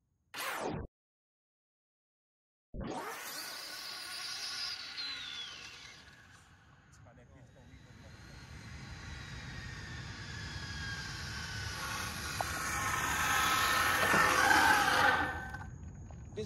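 Electric RC drag car running at speed: a high motor whine with tyre noise that falls in pitch and fades as the car pulls away, then grows steadily louder as it comes back, cutting off suddenly near the end. A brief whoosh comes just before, followed by a short gap of silence.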